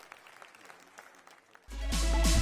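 Applause breaks off, leaving a few faint scattered claps. Near the end, loud electronic music with a heavy bass starts suddenly.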